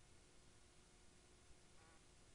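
Near silence: faint room tone with a thin steady hum and a brief faint pitched sound near the end.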